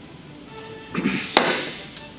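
A sip of beer from a small tasting glass, then the glass set down on the table with a single sharp knock.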